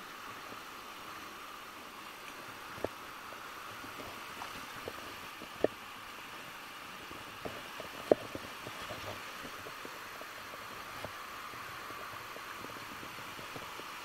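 Steady rush of flowing river water, with a few short sharp clicks scattered through it, the loudest about eight seconds in.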